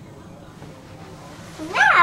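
Quiet room tone, then near the end a short, high-pitched voice rising and falling in pitch: the start of someone saying "no".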